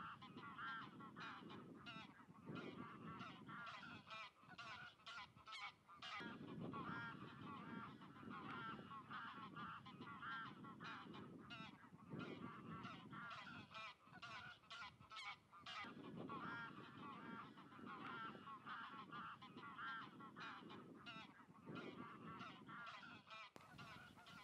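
A flock of greylag geese honking, many faint overlapping calls in a steady chorus.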